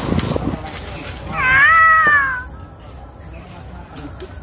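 A cat meowing once: a single loud, drawn-out meow lasting about a second, starting a little over a second in, its pitch rising and then easing down at the end.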